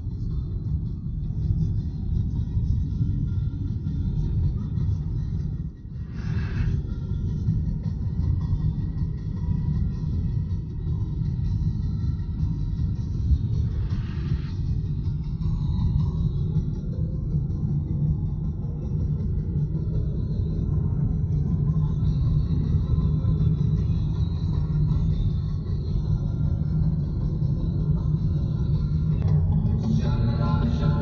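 Steady low road-and-engine rumble heard inside a moving car's cabin, with background music playing faintly under it.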